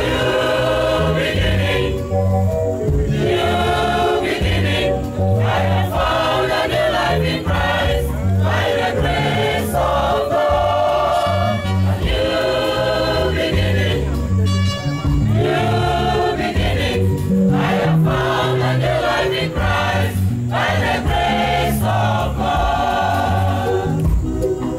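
Mixed-voice gospel choir singing an anthem into microphones, in phrases with short breaths between them. Instruments play along, with a steady bass line under the voices.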